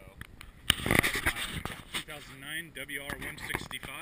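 A man's voice talking close to the microphone, with a loud, brief burst of noise about a second in.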